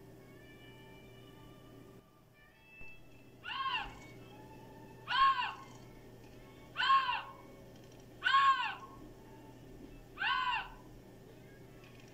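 Eurasian lynx calling: five loud mewing calls, each rising and falling in pitch, about one and a half seconds apart.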